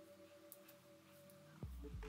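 Quiet background music: soft held synth tones, with a deep bass beat coming in near the end.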